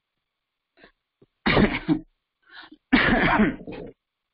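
A person coughing twice over a video-call line: a short cough about one and a half seconds in, then a longer one about a second later.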